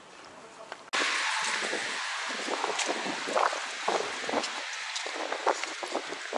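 Busy street ambience. For about the first second there are faint footsteps on cobblestones, then the sound changes abruptly to a louder steady hiss with the voices of passers-by through it.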